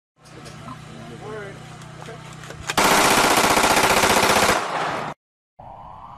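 A pistol fired fully automatic: one loud, continuous burst of rapid shots lasting nearly two seconds, starting about three seconds in, after a quieter stretch with faint voices.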